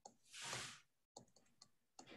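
Faint clicking of computer keys, a few quick clicks near the start and again after the middle, with a short soft rush of noise about half a second in.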